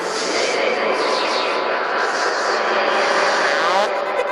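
Beatless breakdown in a trance mix: a dense, rushing noise sweep with effect textures and no bass or kick drum, with pitches rising toward the end as a riser before the drop.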